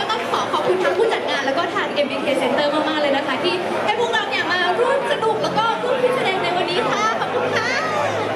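Overlapping chatter of several women's voices talking over one another, amplified through stage microphones.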